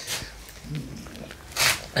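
A pause in conversation: a faint, low voice murmur about halfway through, then a short breathy hiss just before speech resumes.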